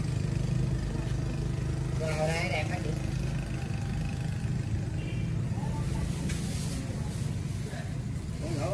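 Busy wholesale market background: a steady low motor drone under scattered voices, with one voice heard briefly about two seconds in.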